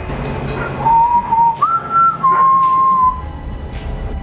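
Someone whistling a short tune of three held notes, a low note, then a higher one, then a slightly lower one, about a second in, over low background music.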